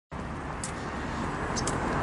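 Road traffic noise: a steady rush of passing cars that slowly grows louder, with a couple of faint ticks.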